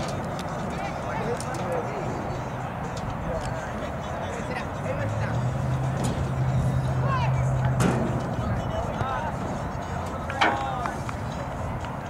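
Distant shouts from players on an outdoor soccer field over a steady background of wind and open-air noise. A low steady hum runs for a few seconds in the middle, and a sharp knock comes about two-thirds of the way in.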